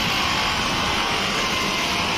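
Steady, even din of a busy market street at night, with no single sound standing out.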